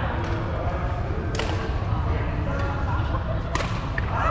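Badminton rackets striking a shuttlecock: two sharp cracks about two seconds apart, over a background murmur of voices in a large sports hall.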